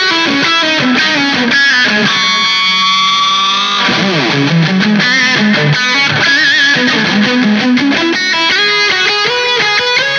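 Vola Vasti KJM J2 semi-hollow T-style electric guitar playing a fast single-note lead line. A note is held from about two seconds in, then the pitch slides quickly downward near four seconds, followed by more quick runs up and down.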